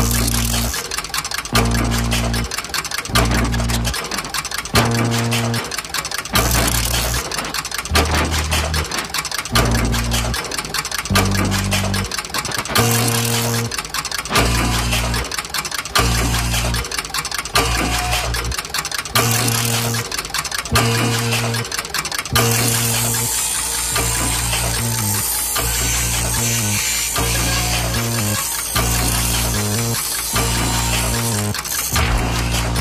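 A band playing rhythmic music on electric guitars, keyboards and drums over a repeating bass riff. The cymbals swell louder about two-thirds of the way through.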